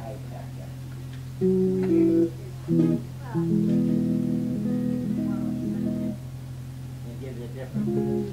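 A few chords or notes played on a guitar, each held for a moment, with a gap before a longer passage in the middle and one more near the end, over a steady low hum.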